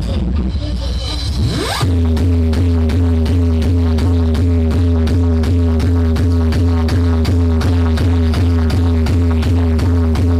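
Loud dance music from a DJ sound system. A rising sweep builds over the first two seconds, then a heavy, booming bass comes in with a fast, even, repeating beat.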